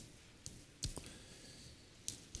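A few faint clicks and light taps of handling at a pulpit lectern while a Bible passage is being looked up, the loudest a dull knock a little under a second in.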